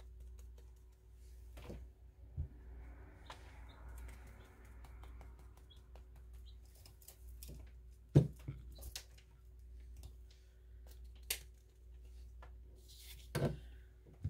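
A wooden-mounted rubber stamp being set down, pressed and lifted on book pages over a cutting mat: scattered light knocks and taps, with paper rustling a few seconds in. The loudest knock comes about eight seconds in.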